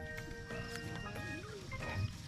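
Background music with held notes that change in steps, and a brief wavering tone near the middle.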